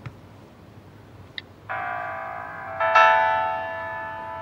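Electronic two-note doorbell chime: a first held tone, then a louder second tone a little over a second later that slowly rings out.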